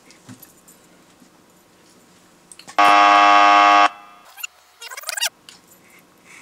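A game-show style wrong-answer buzzer sounds once, about halfway in: a loud, steady buzz lasting about a second that signals 'wrong'.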